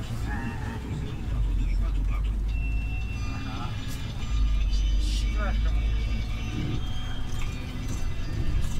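Low engine and road rumble of a city bus heard from inside the cabin while it drives. The rumble swells twice, about a second in and again a little past the midpoint.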